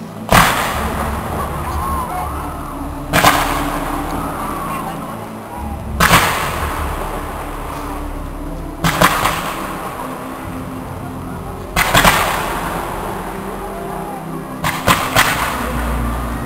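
Fireworks shells bursting overhead: a loud bang about every three seconds, each trailing off into a long rumble, and a quick run of several bangs near the end.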